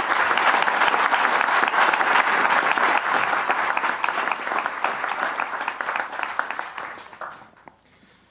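Audience and panelists applauding, loud at first, then thinning out and dying away after about seven seconds.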